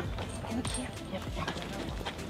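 Irregular footsteps and scuffling on dry dirt ground as a person and a leashed bulldog move about.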